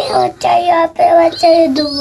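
A young child singing a run of short, evenly held notes, about five in two seconds, the last ones a little lower.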